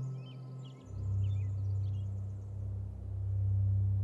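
Background score: a low sustained drone that drops to a deeper note about a second in, with faint bird chirps scattered over it.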